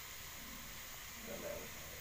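Quiet, steady background hiss, with one faint, brief indistinct sound a little past halfway.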